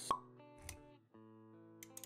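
Animated-intro sound effects over background music: a sharp pop right at the start and a short low thud a little later, with soft sustained music notes that drop out briefly around the middle and then return.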